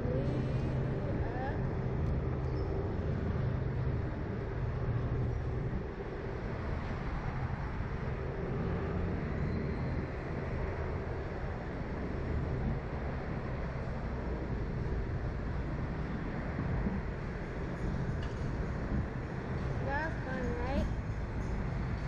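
Steady rumble of road traffic and wind heard from high above a busy road, with a short burst of a girl's voice or laugh near the end.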